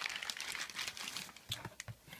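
Crumpled newspaper packing rustling and crackling as it is pulled out of a cardboard box by hand, with a few sharp crackles near the end.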